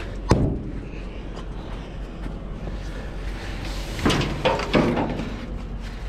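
Metal knocks and thumps of a person climbing into a container well car and handling gear against its steel, with one sharp knock about a third of a second in. Around four seconds in come more knocks and an out-of-breath grunt from the exertion.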